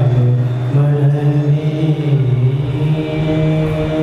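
A man singing a Kannada devotional song close into a microphone, in slow, long-held notes that shift pitch every second or two.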